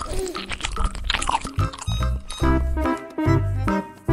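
Soft crunching and scraping of a small fork cutting into a miniature sponge cake. About two seconds in, upbeat background music with a thumping beat comes in.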